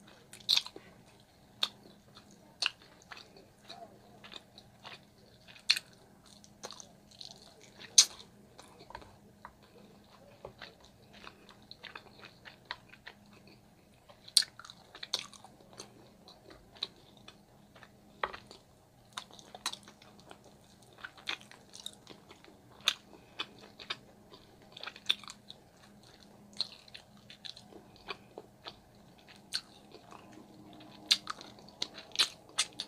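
Close-miked chewing and lip-smacking on sauce-glazed oxtail and rib meat, with sharp wet mouth clicks scattered irregularly throughout; the loudest comes about eight seconds in.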